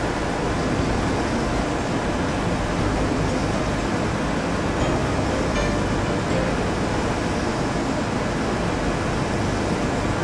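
Steady, even hiss of background room noise, unchanging throughout.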